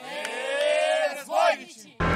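Contestants' voices in one long drawn-out cheer of encouragement, held about a second, followed by a short second shout.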